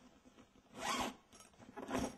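Two short rasping sounds, like a zipper being pulled, about a second apart: one a little under a second in and one near the end.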